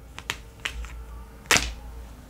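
Tarot cards being handled and laid down on a table: a few light clicks in the first second, then one sharper slap about one and a half seconds in.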